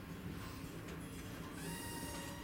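Steady low hum of the ship's background machinery or ventilation, with a short hiss near the end.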